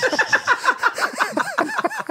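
People laughing, a quick steady run of short laughs.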